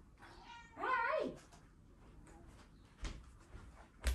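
A house cat meowing once, one drawn-out meow about a second in, rising and then falling in pitch. A few faint knocks follow near the end.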